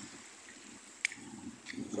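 Faint trickling and lapping of shallow water, with one sharp click about a second in.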